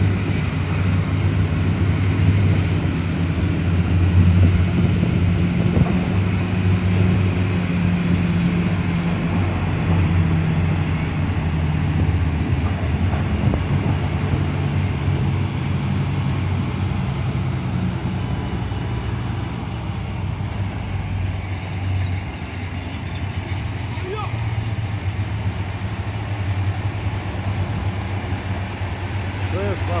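Large diesel engine of a Hitachi EH1100 rigid mining haul truck running with a steady low drone. The level eases a little after about twenty seconds.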